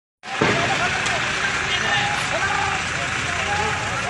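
Faint, distant shouting voices over a steady roar of outdoor street noise.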